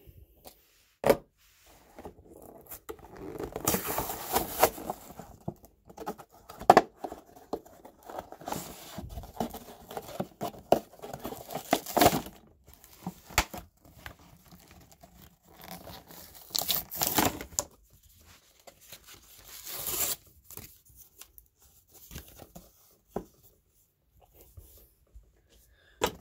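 Cardboard-and-plastic blister pack of a toy monster truck being torn open by hand: irregular tearing and crinkling of plastic and card in bursts, with scattered sharp clicks.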